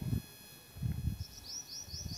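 Faint, repeated short rising chirps, about four a second, starting a little after a second in: a small bird calling in the background.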